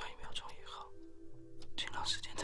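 Soft whispering over quiet background music with held notes.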